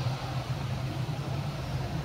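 A steady low mechanical drone with a faint noisy hiss above it.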